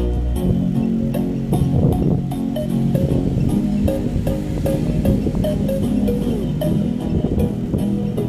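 Bass-heavy music played loud through a JBL Flip 5 portable Bluetooth speaker. A held deep bass tone gives way about half a second in to a pulsing bass line over a steady beat.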